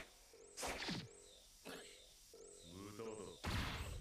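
Faint cartoon fight sound effects: a few quick whooshes and hits, with a short vocal cry just before the last, loudest hit.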